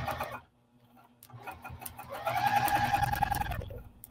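Domestic sewing machine stitching through soft vinyl and foam interfacing, feeding the work along on its own. It stops about half a second in, then starts again about a second in, builds up to a steady whine with rapid needle strokes, and stops just before the end.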